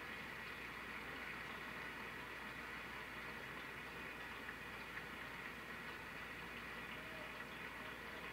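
Faint, steady applause from a large audience, an even patter with no break.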